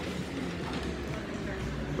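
Café room tone: a steady low hum with faint background voices.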